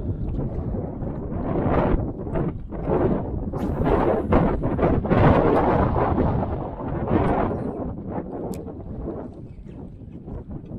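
Wind gusting hard over the microphone, a loud, uneven rumble that swells in the middle and eases near the end.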